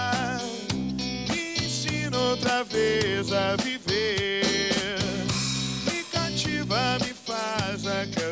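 A live rock band playing: electric guitar, electric bass and drum kit, with a bending melodic line over a steady beat.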